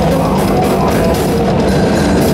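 Technical death metal band playing live: distorted electric guitars with a fast drum kit and cymbals, loud and dense.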